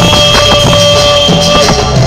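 Live cumbia band playing loudly: held keyboard notes over a steady beat of timbales, congas and shaken percussion, with bass underneath.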